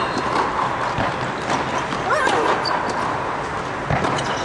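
Tennis balls struck by racket strings and bouncing on an indoor hard court, a few sharp knocks spread through the rally, with a player's short grunt on a stroke about two seconds in.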